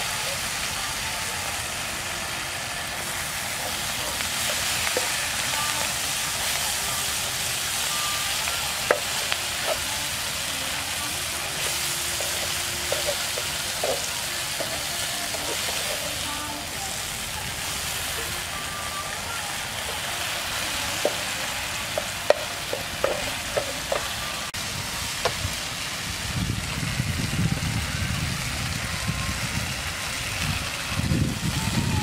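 Food sizzling in oil in a nonstick frying pan as it is stir-fried, with a steady hiss and scattered clicks and scrapes of the spatula against the pan; water spinach (morning glory) goes into the pan partway through. A low rumble comes in near the end.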